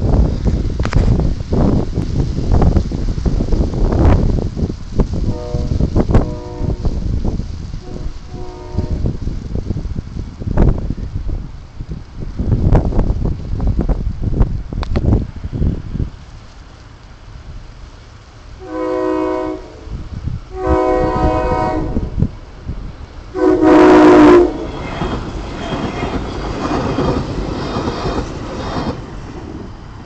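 SEPTA Hyundai Rotem Silverliner V electric train sounding its horn three times for a grade crossing, the third blast the loudest, then rolling past with a steady rumble. Wind buffets the microphone through the first half.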